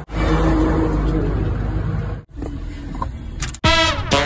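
Road traffic noise around a taxi at the kerb as people get in. After a sudden cut the noise is quieter, and music begins shortly before the end.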